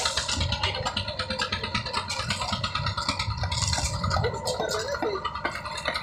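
A construction machine running steadily at the site, with rakes scraping through wet concrete on top.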